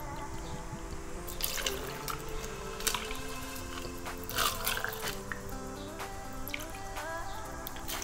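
Background music, with tequila trickling from a bottle into a small stainless-steel jigger and tipped into a metal cocktail shaker, giving a few short drips and splashes.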